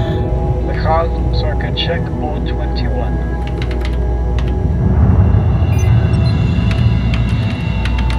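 Ominous background music: a sustained low drone with held tones that swells about five seconds in. A few scattered keyboard clicks sound over it.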